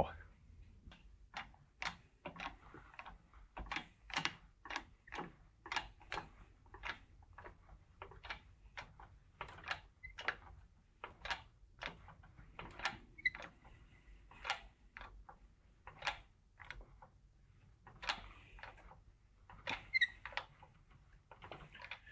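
Hydraulic shop press working as its ram loads a welded steel test plate for a bend-to-break test: a long run of faint, irregular clicks and ticks, about two a second.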